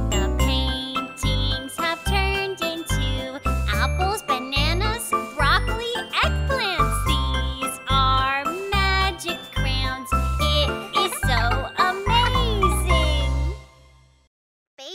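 Children's song: a voice singing over a steady bouncy beat with a chiming, bell-like accompaniment, stopping shortly before the end.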